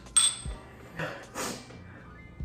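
Two small glass shot glasses clinked together in a toast: one sharp clink with a brief high ring just after the start. About a second later come two short breathy hissing sounds as the shots are drunk.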